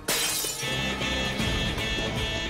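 A sudden cartoon crash of shattering crystal as a crystal alarm button is punched, under dramatic music.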